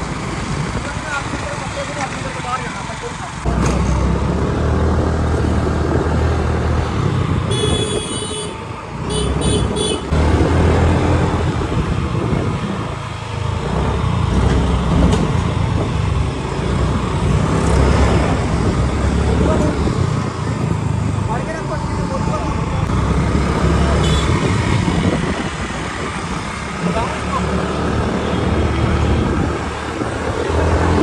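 Motorcycles riding along a busy street: engine noise and road rumble, getting louder about three seconds in. A high-pitched horn beeps once and then a few quick times around eight to ten seconds in.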